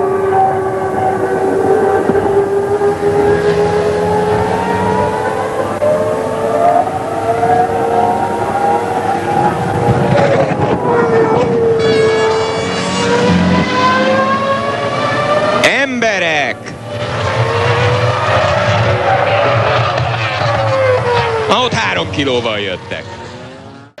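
Formula One cars' V10 engines running on the track, the engine notes drifting up and down. About two-thirds through, a car passes close by with a sharp falling pitch.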